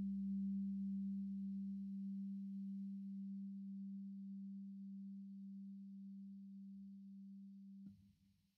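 A single low, steady held tone that slowly fades, like the final sustained note of calm background music, cut off abruptly just before the end.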